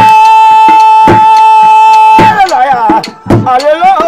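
Somali Bantu sharara song: a high voice holds one long note for about two seconds, then breaks into a wavering, ornamented melody, over sharp drum strikes.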